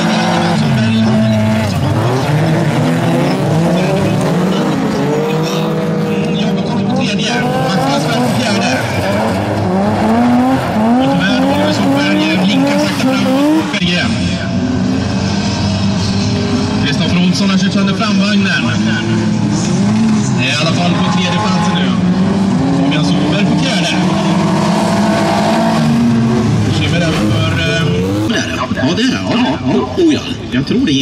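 Several bilcross race cars racing on a dirt track, their engines revving up and dropping back again and again as the drivers change gear, with a number of engines heard at once.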